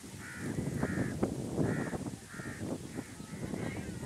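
A crow cawing repeatedly, about six short caws at a steady pace, over low background noise.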